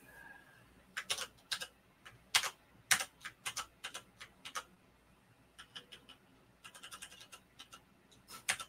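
Computer keyboard keys clicking in irregular runs, likely shortcut presses while working in drawing software. There are two clusters, about a second in and again near the end, with a short lull between them.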